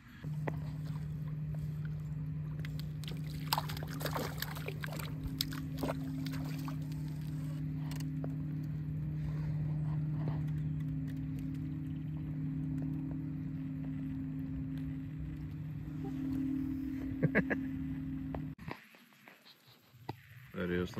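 A boat motor running with a steady low hum, with scattered faint clicks and knocks over it; the hum cuts off suddenly near the end.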